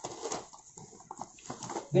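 Rustling of a cotton saree as it is shaken open and spread out by hand, in a few soft, brief bursts of cloth noise.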